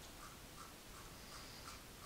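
Near silence, with faint soft ticks from a computer mouse scroll wheel turning.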